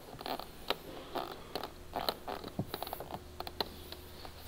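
Hands pressing and rubbing along a polyurethane rear diffuser to seat its adhesive tape against the car bumper: faint, irregular light taps and rubbing sounds, about a dozen in a few seconds, over a faint low hum.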